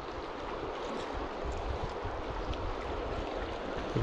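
Steady rush of a flowing river, the water up and moving.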